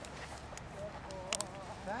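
Hoofbeats of a horse trotting on an arena surface, with a few sharper clicks among them.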